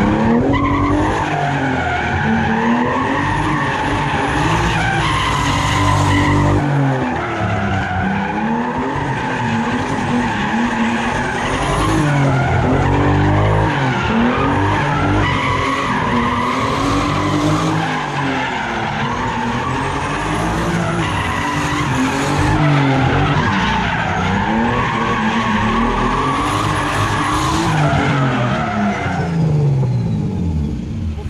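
Turbocharged BMW 328 coupe's straight-six engine revving up and down again and again while drifting, with its rear tyres screeching on the asphalt.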